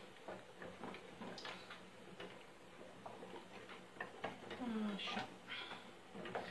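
Wooden spoon stirring melting wax in a metal saucepan, with faint, irregular light taps and clicks of the spoon against the pan. A short spoken "așa" comes near the end.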